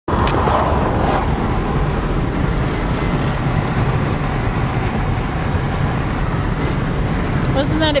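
Steady road and wind noise inside a moving car: a constant rushing hiss over a low rumble.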